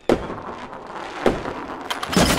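Fireworks: a sudden loud bang just after the start, a hiss running on, and two more sharp bangs, one in the middle and one near the end.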